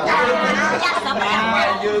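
Several voices talking over one another at once, over a faint steady low hum.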